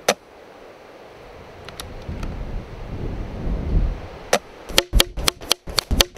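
A single sharp report from a BSA R10 SE pre-charged pneumatic air rifle fired at the very start, then a low wind rumble on the microphone. In the last two seconds comes a rapid, irregular run of about a dozen sharp clicks.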